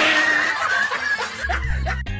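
Boys laughing and snickering; about a second and a half in, a low bass line of music comes in.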